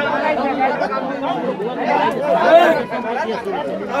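A crowd of men talking at once: overlapping chatter with no single clear voice.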